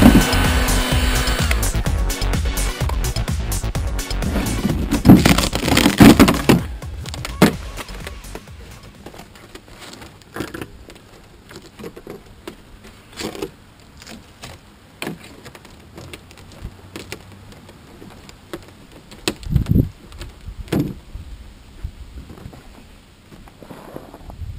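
Electronic music with a steady beat fades out over the first six seconds. Then come scattered sharp cracks and knocks of the thin plywood bottom being pried and torn off a small wooden boat hull.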